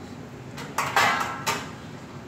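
Kitchenware clattering: about four sharp clanks in quick succession, the one about a second in the loudest, each with a short ring.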